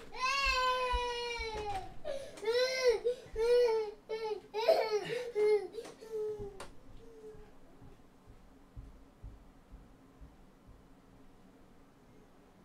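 Loud crying calls: one long falling cry, then five or six short rising-and-falling cries, stopping about six and a half seconds in.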